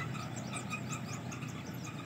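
A background chorus of small animals calling: many short repeated calls mixed with quick high chirps, going on steadily.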